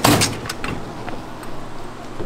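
Gloved hands rolling and sliding a long rope of warm hard candy across a cloth-covered worktable: a loud rubbing swish right at the start, then a few light knocks and a softer rustle.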